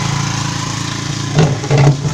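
A small engine running steadily at idle with a fast even pulse, and two brief louder sounds in the last half second.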